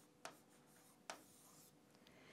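Near silence, with two faint taps and light scratching of a stylus writing a number on a tablet.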